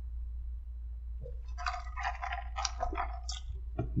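Fountain lemonade sipped through a plastic straw from a paper cup: a couple of seconds of sucking and slurping mouth noise.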